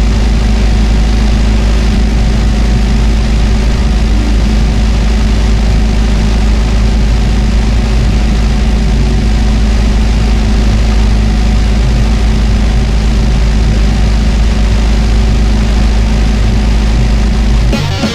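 A loud, very low distorted drone held steady with no drums, part of a death metal song, cutting off suddenly near the end.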